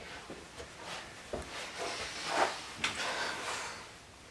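Handling and movement noises in a small room: a paper file being put down and a person moving about, with scattered knocks, a sharp knock about a second in and two louder rustles in the second half.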